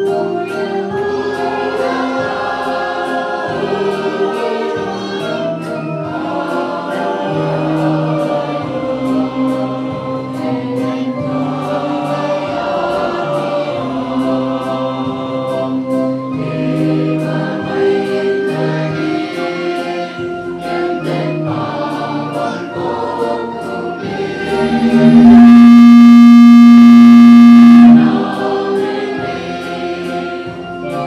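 Mixed choir of children and adults singing a Christmas carol with instrumental accompaniment and a soft steady beat. About 25 seconds in, one note is held for about three seconds, much louder than everything else and loud enough to distort the recording.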